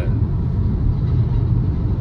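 Steady low rumble of a moving car heard from inside its cabin: engine and tyre noise while cruising.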